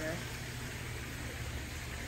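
Steady hiss of water running from the pool's misters and waterfall, over a low steady hum.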